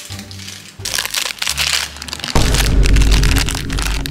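Crinkling and crackling of a foil snack packet being handled, over background music whose deep bass comes in about halfway through.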